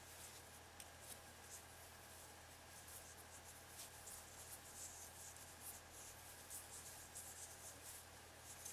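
Faint, repeated scratchy rubbing of a metal crochet hook pulling yarn through stitches as single crochets are worked, the strokes coming closer together in the second half, over a low steady hum.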